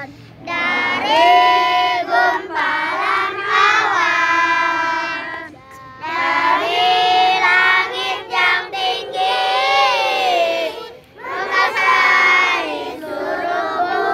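A children's song: a child's voice singing melodic phrases, with short breaks between lines about six and eleven seconds in.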